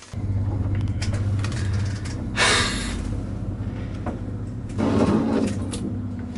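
A small lift's motor starting up and running with a steady low hum as the car travels between floors, with two brief noisier bursts of rattling along the way. It runs because the weight switch under the middle floor tile is being pressed.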